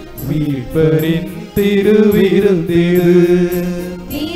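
Tamil Catholic hymn being sung, a voice holding long notes with short pauses between phrases.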